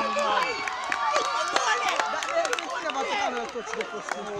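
Several voices of a football crowd shouting and calling over one another, with scattered sharp clicks among them.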